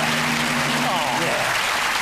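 Studio audience applauding and cheering after a correct answer, a steady dense clatter of clapping. Under it, a sustained low chord from the show's music sting dies away a little past the middle.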